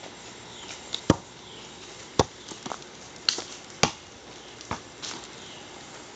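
A basketball hitting the hoop and bouncing on the ground: four sharp thuds spread about a second apart, with a few lighter knocks between.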